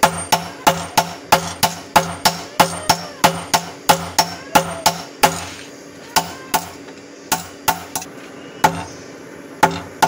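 A sledgehammer and a hand hammer striking hot bearing steel on an anvil, forging a machete blade, in a steady rhythm of about three ringing blows a second. About five seconds in the blows thin to a few scattered strikes, then the steady rhythm starts again near the end.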